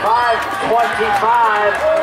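Several people's voices talking and calling out over one another, with no break.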